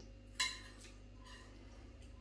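Metal spoon clinking against a ceramic dinner plate while scooping up food: one sharp, briefly ringing clink about half a second in, then a fainter one a little over a second in.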